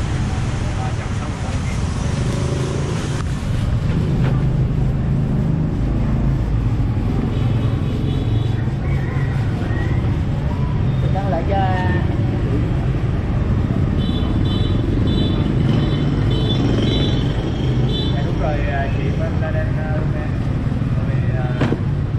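Motorbike engines idling and passing close by in a narrow street, a steady low hum, with a run of short high beeps about two-thirds of the way through.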